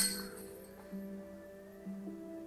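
Background music with a simple melodic tune. Right at the start a putted disc strikes the metal chains of a disc golf basket with a sharp clink that rings briefly and fades.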